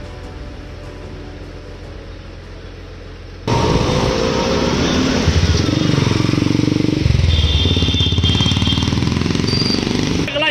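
Quiet background music, then a sudden cut about three and a half seconds in to loud street traffic: motorcycle and auto-rickshaw engines running and revving as they pass, rising and falling in pitch. A vehicle horn sounds for about a second in the second half.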